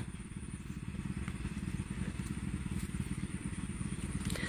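Low, steady rumble of a distant motor running, with a few faint ticks.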